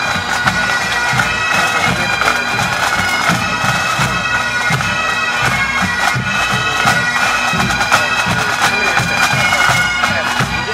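Massed Highland pipe bands playing together: Great Highland bagpipes, with steady drones held under the chanter melody, and pipe-band drums beating throughout.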